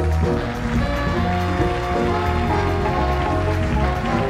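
Big-band jazz ensemble playing full out: sustained brass and saxophone chords over bass and drums.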